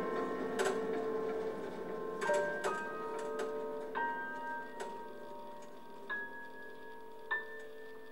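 Quiet, sparse piano music: single notes struck about once a second, each ringing out over a held low note, growing fainter toward the end.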